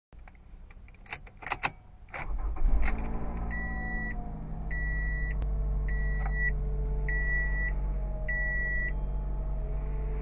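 A few sharp clicks, then the 2013 Toyota RAV4's 2.5-liter four-cylinder engine starts about two seconds in, flares briefly and settles into a steady idle. Over the idle, a dashboard warning chime beeps five times at an even pace.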